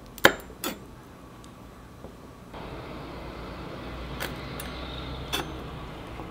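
Chef's knife knocking sharply on a wooden cutting board while cutting raw prawns. There are two knocks in the first second and two more around four and five seconds in, over a faint steady hiss that grows louder about halfway through.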